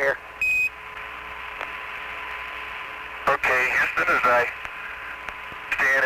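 Apollo air-to-ground radio link. Just after the start, Mission Control's transmission ends with a short, high, steady Quindar beep. Then comes the hiss of the radio channel with a faint steady hum, and a brief stretch of a voice over the radio a little past halfway.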